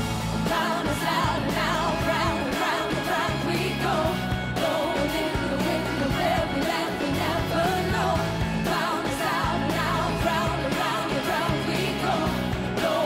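Live pop-rock music: a woman sings a wavering melody over drums and a steady bass line.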